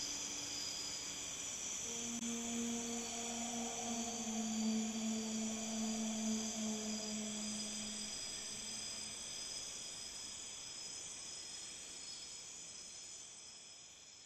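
Soft relaxation music fading out. A sustained low note comes in about two seconds in and dies away over a steady high shimmering layer, and the whole gradually gets quieter.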